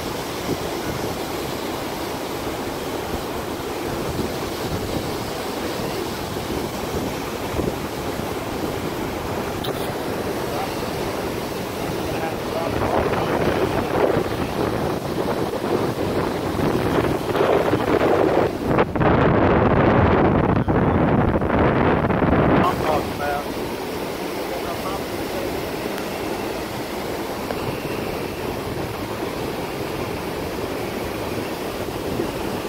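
Wind buffeting the phone's microphone over a steady rush of river water, the wind growing louder for about ten seconds in the middle.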